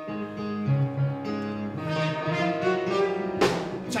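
Live band playing an instrumental song introduction: held chords over a changing bass line, with two sharp hits near the end.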